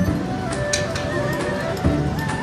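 Bally Fu Dao Le slot machine playing its free-games music while the reels spin, with two short clicks as reels stop.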